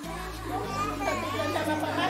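Background music with steady held low notes that change about half a second in, under indistinct voices talking in the room.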